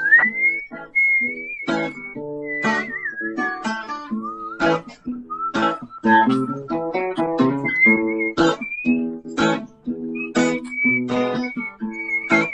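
A whistled melody over a strummed acoustic guitar: the whistle holds a high note, drops lower for a couple of seconds in the middle, then climbs back up to the high line while the guitar keeps strumming.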